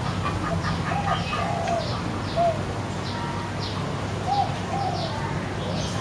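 Birds calling in the background: short, high, falling chirps about every half second, with a few lower calls that rise and fall. A steady low hum runs underneath.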